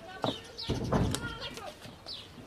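Men's voices talking outdoors, with short falling bird chirps and a low thump about a second in.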